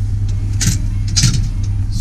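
Metal cargo-cabinet drawer being pulled out on its slides: two short rattling bursts about half a second apart, over a steady low rumble.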